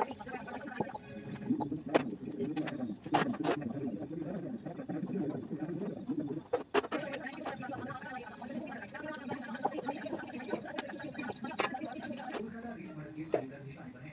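A wooden rolling pin working roti dough on a board, with a few sharp knocks and taps scattered through, over a steady background murmur of voices.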